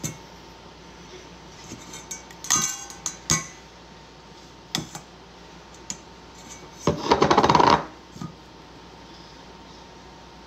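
A fine-mesh sieve and a stainless steel mixing bowl clinking a few times as powdered sugar is poured in, then about a second of rapid metallic rattling as the sieve is shaken over the bowl to sift the sugar.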